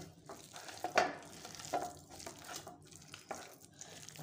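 A hand kneading and squeezing a damp gram-flour and raw-banana kofta mixture in a steel plate. It makes irregular wet squishing and scraping strokes, the loudest about a second in, over a faint steady low hum.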